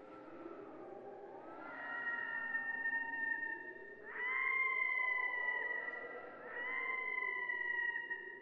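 Three long animal calls, each held at a nearly steady pitch for about two seconds, beginning about two, four and six and a half seconds in, over a lower, slowly wavering tone.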